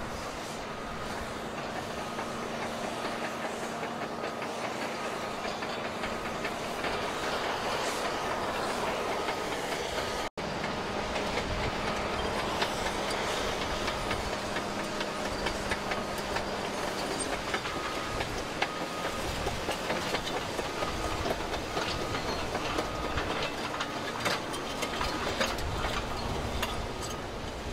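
Hydraulic excavator digging through water-covered volcanic sand and rock: the machine runs steadily with a low hum, and the bucket scraping through the debris gives sharp clicks and clatters of stones. The clicks grow more frequent in the second half. There is a brief cut in the sound about ten seconds in.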